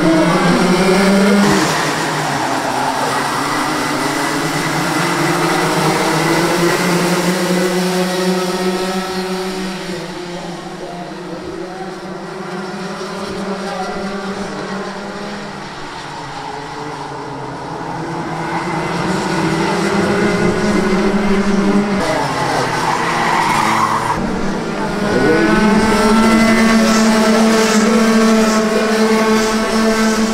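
A pack of racing karts with two-stroke Rotax Junior Max engines, running hard with the pitch rising and falling as they accelerate and back off. The sound fades for a stretch in the middle and grows loud again in the last few seconds as the karts come close.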